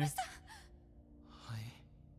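A person's short, breathy gasp about one and a half seconds in, faint against a low steady background hum.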